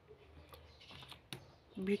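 A few light clicks and knocks of small plastic cosmetic containers being handled in a plastic basket.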